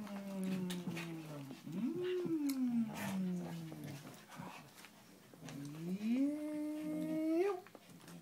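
Three long, drawn-out vocal calls sliding in pitch. The first falls, the second rises and then falls, and the last rises and holds before stopping near the end, with a few faint clicks between them.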